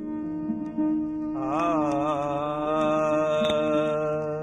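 Opening of a Sikh kirtan: a steady harmonium chord, joined about a second and a half in by a long wordless sung note with a wavering pitch.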